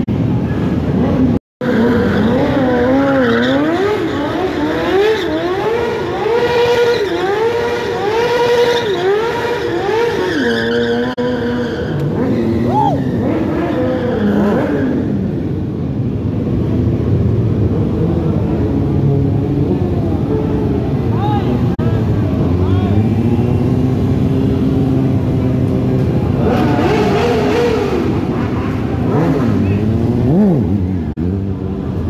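Stunt motorcycle engines revving hard, pitch swinging up and down in quick repeated blips for the first half, then running steadier with another rise in revs near the end. There is a brief dropout in the sound about a second and a half in.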